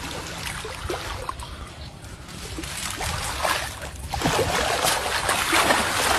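Muddy water splashing and sloshing as people grapple with a large fish in the shallows, growing louder in the last couple of seconds.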